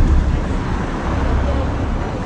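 Wind on the microphone outdoors: a steady low rumble with hiss.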